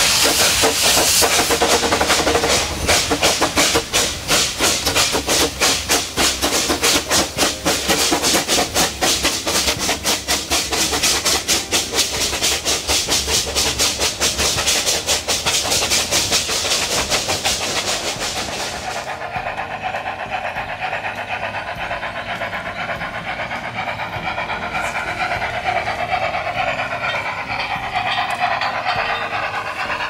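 Narrow-gauge steam locomotive working past with rapid, rhythmic exhaust chuffs and loud hissing from its open cylinder drain cocks. After about nineteen seconds the chuffing and hiss drop away as the train's coaches roll past on the rails.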